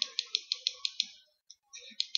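A quick run of about seven evenly spaced computer clicks, some six a second, stepping a chess program back through moves to reach an earlier position. Two more clicks come near the end.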